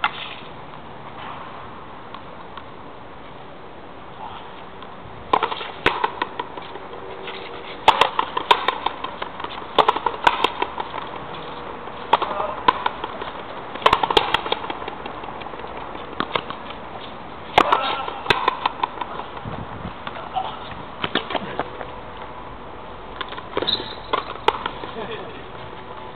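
Frontenis rally: an Oxone ball struck by rackets and slamming into the fronton wall, a string of sharp cracks a second or two apart, often in quick pairs of racket hit then wall hit.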